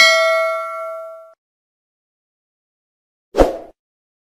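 Notification-bell sound effect of a subscribe-button animation: a bright bell ding rings out and fades away over about a second and a half. A short dull knock follows near the end.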